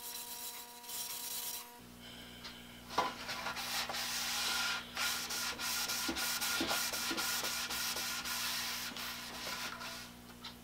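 A cloth rag rubbing back and forth along a wooden quilt rack, buffing in paste wax. It is a dry scrubbing sound that gets louder about three seconds in, where a sharp knock also sounds.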